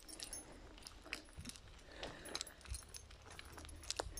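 Faint, irregular small clicks and rustles from walking a leashed dog along a dirt forest path.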